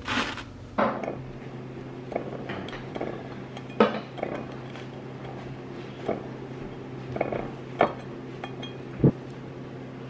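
Scattered clinks and knocks of kitchenware, about eight sharp taps spread through: English muffins handled in a skillet, then a metal fork against a ceramic plate as a muffin is split with the fork. A low steady hum runs underneath.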